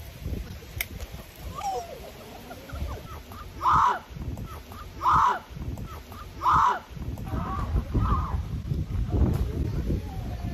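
A crow cawing three times, about a second and a half apart, over low wind rumble on the microphone.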